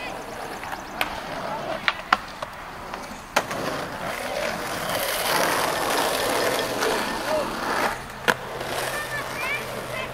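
Skateboard wheels rolling over concrete, with sharp board clacks about a second in, twice around two seconds, a little after three seconds and again just past eight seconds. The rolling is loudest from about four to eight seconds in.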